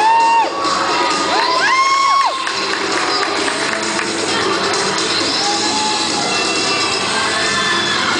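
A crowd of girls cheering and screaming, with two loud high-pitched yells in the first two seconds, then a steady din of cheering and shouting.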